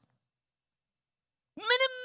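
Silence for about the first second and a half, then a man's voice breaks in with a high, drawn-out sound that runs straight on into speech.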